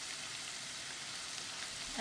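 Ground beef with onion, garlic and tomato sizzling steadily in a skillet.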